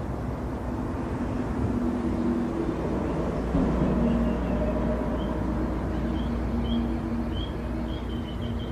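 A steady low engine drone with wavering hum tones runs underneath. From about halfway, a bird's short high chirps repeat at roughly half-second intervals and quicken near the end.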